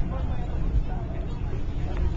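Indistinct voices of several people talking over a steady low rumble.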